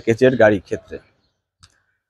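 A man speaking for about the first second, then quiet, with one faint short click about one and a half seconds in.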